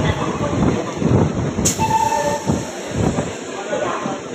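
Passenger train running along the track, heard from inside a coach as a steady loud rumble. About a second and a half in there is a sharp knock, followed by a short two-note train horn lasting under a second.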